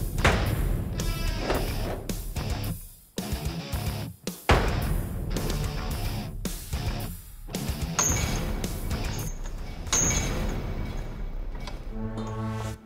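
Hard-driving rock music over a series of sharp metal impacts: a forged steel Vajra-mushti (edged knuckle duster) stabbed and punched through sheet metal and struck against heavy chain.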